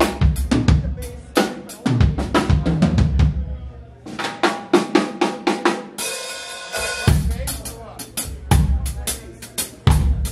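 Drum kit played live: a busy groove of bass drum, snare and rimshots, with a short break about four seconds in and a cymbal crash ringing for about a second near six seconds, before the beat picks up again.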